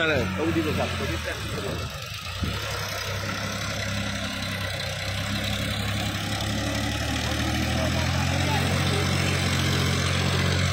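Farmtrac 6042 tractor's diesel engine running at a steady speed while it pulls a rotary tiller through mud, getting gradually louder.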